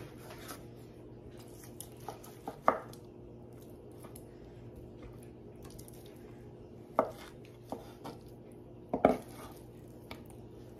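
Chef's knife cutting ham steak into cubes on a wooden cutting board: a few separate knocks of the blade on the board with quiet gaps between them, the sharpest about three, seven and nine seconds in. A faint steady hum runs underneath.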